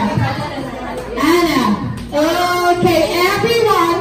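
Speech: voices talking in a large hall, with chatter from the guests.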